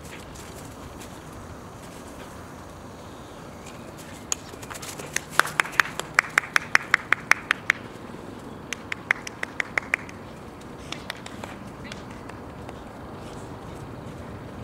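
Two runs of sharp, rapid clicks, about five a second: the first lasts about three seconds and the second is shorter, about a second later. They sit over a faint, steady background.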